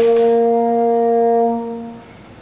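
A single long brass note, held steady for about a second and a half and then fading away.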